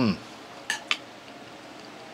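A man's appreciative "hmm" while tasting food, falling in pitch. Then, just under a second in, two sharp clinks of a metal fork in quick succession.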